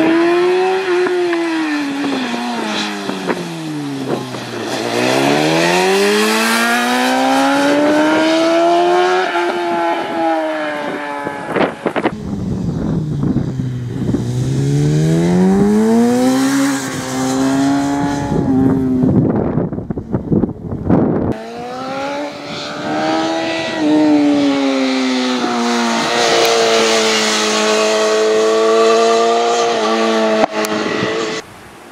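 Racing sport motorcycle engine at full race pace, its pitch dropping as the rider brakes and downshifts for bends and climbing again as he accelerates hard up through the gears, twice over. The sound breaks off briefly about twelve seconds in and again around twenty seconds, then the engine holds a high, steady pitch near the end.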